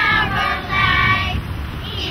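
Fourth-grade children's choir singing in unison through microphones, holding two notes, the second longer.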